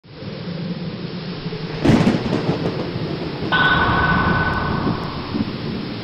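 Thunderstorm sound effect: steady rumbling rain-like noise, broken about two seconds in by a loud thunderclap. Midway through, a steady high electronic tone with hiss rises over it for about a second and a half.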